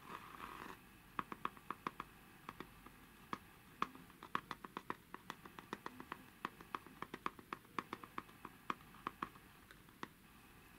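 Fingernails tapping on the carved lid of a small round wooden box: quick light clicks at an uneven pace, several a second, after a brief soft rubbing at the start.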